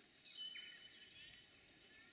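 Faint bird calls: a few short, high whistled notes that slide downward, with a brief steady note about half a second in.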